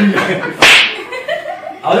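One sharp, loud hand slap about half a second in, with voices talking before and after it.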